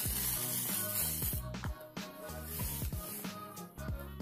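Background music, with a crackling rustle in the first second and a half as the paper backing is peeled off a sheet of fusible web.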